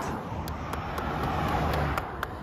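A car driving toward the microphone on an open road, its engine and tyre noise growing slowly louder.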